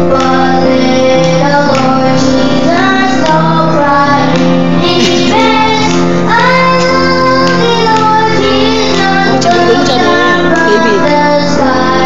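A group of children singing a Christmas carol together into microphones, over steady held backing notes.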